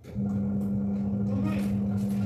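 A steady low held tone with a lower hum beneath it that starts abruptly just after the start and does not change, typical of a sustained low note opening an added background music track.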